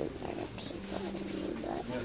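A child's voice making non-word vocal noises in short pitched bursts, one sound held steady for about half a second in the middle.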